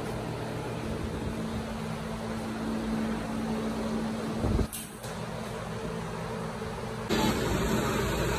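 Steady low mechanical hum over background noise, broken by a short thump about four and a half seconds in.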